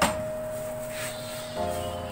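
Background music holding one steady note, joined by a fuller chord about one and a half seconds in. Right at the start there is a single sharp knock of a wooden spatula against the pan.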